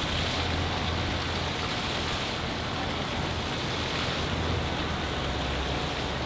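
Steady outdoor background noise: an even rushing with a low rumble underneath, with no distinct events.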